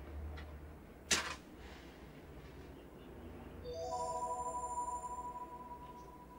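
A wooden match struck once on a matchbox: a short scratchy flare about a second in. From a little past halfway, soft sustained music notes come in one after another and hold together, one note ringing on longest.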